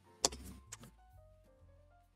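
A sharp click about a quarter second in and a softer one shortly after, then faint background music with soft held notes.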